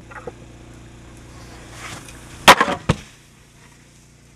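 A snowskate striking down hard on the handrail setup: a loud sharp impact with a short rattle, followed half a second later by a second smaller knock. A faint hiss of the board moving over snow swells just before the hit.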